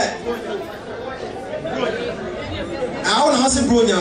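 Chatter of several people talking in a large hall, with a man's voice growing louder about three seconds in.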